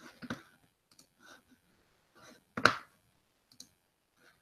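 A few computer mouse clicks, short and sharp, with a single spoken word between them about two and a half seconds in.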